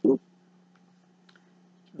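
Very quiet room with a low steady hum and a few faint clicks, from a plastic drink bottle being handled and turned in the hands.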